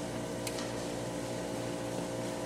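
Steady room hum with a few faint held tones, with one faint click about half a second in.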